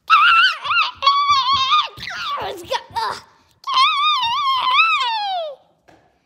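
A child's very high-pitched wailing voice: a wavering squeal, a lower gliding stretch, then a longer wavering squeal that falls away about five and a half seconds in.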